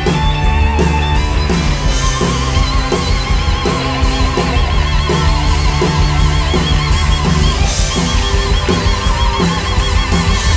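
Live rock band playing an instrumental passage: electric guitars and bass over a drum kit keeping a steady beat. A wavering lead line with vibrato comes in about two seconds in.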